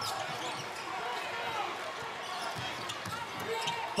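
A basketball being dribbled on a hardwood court, bouncing repeatedly at an uneven pace, over the steady noise of arena crowd voices.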